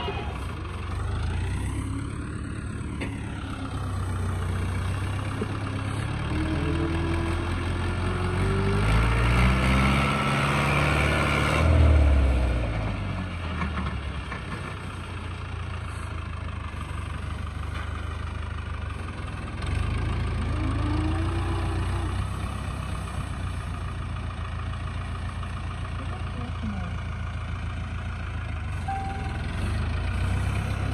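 New Holland Dabung 85 tractor's diesel engine running under load as it pushes soil with its front blade. The engine revs up to its loudest point about twelve seconds in and falls back. It revs briefly again around twenty seconds in.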